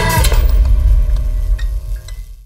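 Horror-trailer sound design: the pitched music gives way about a quarter second in to a loud, deep low rumble, with a few faint sharp ticks in the second half.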